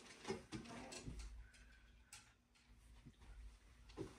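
Near silence in a quiet room, with a few faint clicks and a low hum, then a sharp click right at the end: a pool cue tip striking the cue ball.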